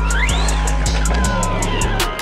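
Background music with a deep sustained bass line and evenly spaced hi-hat ticks, with a whine that rises and then falls in pitch across the first second.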